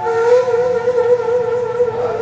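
Daegeum, the Korean transverse bamboo flute, holding one long note with a gentle wavering vibrato.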